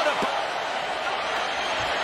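Stadium crowd noise from a large football crowd, a steady even hum of many voices during a live play.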